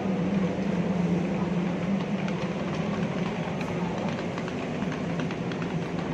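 A steady low mechanical hum from running machinery, under the general noise of a busy outdoor street market.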